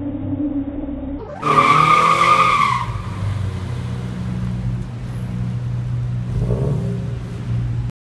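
Sports coupe spinning donuts: the engine runs hard, then the rear tyres squeal loudly for about a second and a half shortly after the start. The engine then settles to a steadier, lower running note as the car slows.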